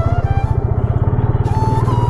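Yamaha FZ motorcycle's single-cylinder engine running steadily as the bike is ridden slowly, its firing pulses coming evenly and low, with background music playing over it.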